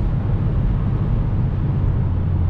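Cabin sound of a 2019 VW Golf GTI Performance on the move: a steady low drone from the turbocharged four-cylinder engine, mixed with road and tyre noise, as the car slows.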